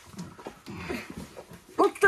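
Faint throaty sounds and breathing from a Jersey cow as she struggles against a calcium bolus being pushed into her throat. A person's voice starts near the end.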